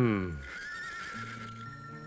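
A horse whinnies once at the start: a single call, falling in pitch, under a second long. Quiet background music with a wavering melody follows.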